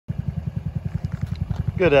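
Hammerhead GTS 150 go-kart's 149cc air-cooled four-stroke single-cylinder engine idling, a low, even putter of about ten beats a second.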